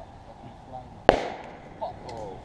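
A single sharp bang about a second in, dying away over about half a second: a punctured container bursting in a bonfire.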